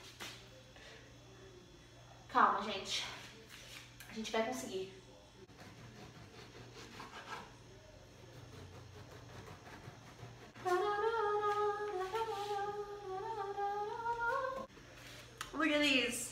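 A woman humming a tune for about four seconds in the second half, her pitch holding fairly steady with small rises and falls. Earlier come two short vocal sounds that fall in pitch.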